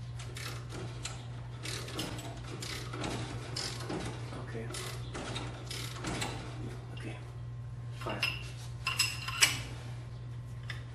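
Ratchet wrench with a pipe extension clicking as it turns the screw of a bench-mounted strut spring compressor, a few clicks a second, tightening down on a coil spring. Near the end come three sharper metallic clanks that ring briefly, the last the loudest.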